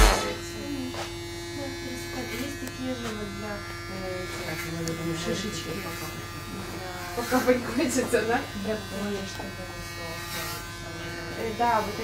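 Electric hair clippers buzzing steadily as they trim hair at the side of the head. Quiet talk runs over the hum, busiest from about seven to nine seconds in.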